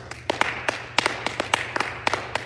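Congregation clapping: scattered sharp hand claps, several a second and unevenly spaced.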